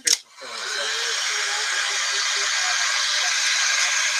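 An electric heat gun switches on with a click and runs steadily, its fan giving an even whooshing hiss as it blows hot air over wet paint on a wooden cutout.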